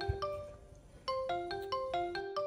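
Mobile phone ringing with a marimba-style ringtone. A short melody of bright struck notes ends, and after a brief pause the same phrase starts again about a second in.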